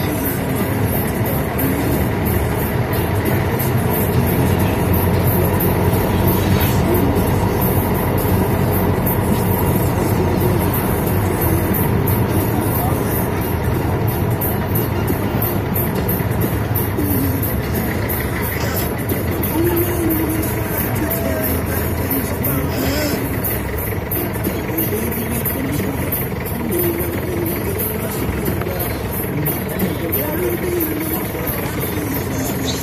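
Engine and road noise inside the cabin of a moving minibus, steady and loud, with music and voices mixed over it.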